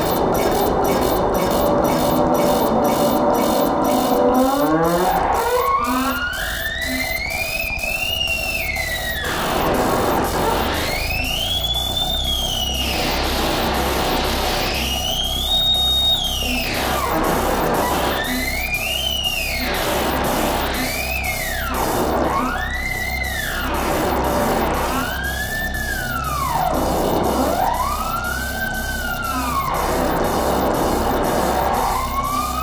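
Live-coded electronic music from a PA system. Synthesized tones sweep up in pitch and fall back in siren-like arcs, one every two to four seconds, quicker in the middle, over a low pulsing bass. A fast high ticking pattern runs at the start.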